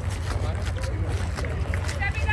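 Indistinct voices over a steady low rumble.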